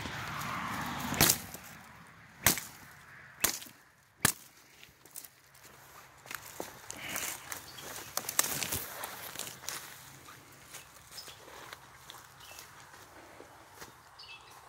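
Footsteps crunching through dry leaf litter and brush, with sharp snaps of twigs and sticks breaking underfoot or springing back; the loudest snaps come a little over a second and about two and a half seconds in.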